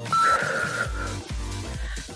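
Workout background music with a steady beat. An interval timer's short electronic countdown beep sounds just after the start, marking the end of a round, and a brief shimmer fades away after it.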